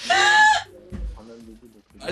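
A short, high-pitched voiced call held for about half a second, followed by quieter low voices.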